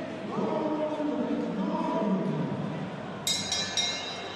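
Arena crowd chanting in unison. Near the end a boxing ring bell is struck three times in quick succession, ringing on, signalling the start of the round.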